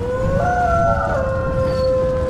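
A wolf howl sound effect that rises briefly and then holds one long pitch, over a deep rumble.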